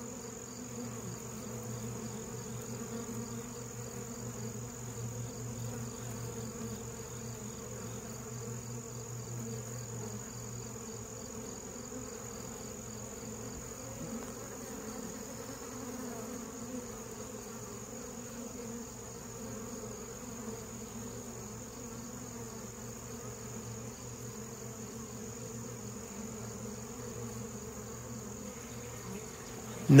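Honey bees buzzing steadily at a busy hive entrance, many foragers flying in and out.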